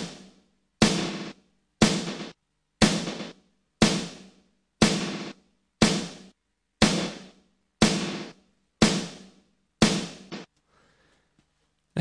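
Sampled snare drum hitting about once a second, each hit followed by short glitchy repeats from Ableton Live 8's Beat Repeat effect mixed with the dry hit. The repeats vary from hit to hit. It stops about ten and a half seconds in.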